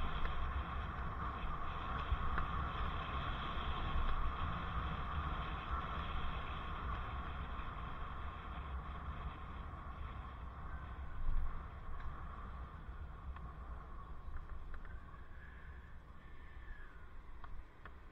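Wind rushing over a helmet-mounted camera's microphone while cycling in city traffic, with road and traffic noise underneath. It grows gradually quieter toward the end as the bike slows.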